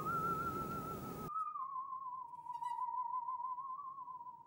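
Musical saw playing a single high, wavering note with strong vibrato that glides slowly down in pitch and then holds. The background hiss behind it cuts off abruptly about a second in.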